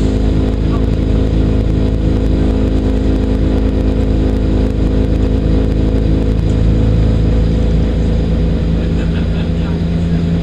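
Class 172 diesel multiple unit's underfloor diesel engine running steadily with a constant drone as the train pulls out of the station, heard from inside the carriage.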